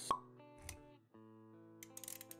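Intro music for an animated title sequence, with a sharp pop sound effect right at the start, a short low thud about half a second later, then sustained notes after a brief drop near one second, with a few clicks near the end.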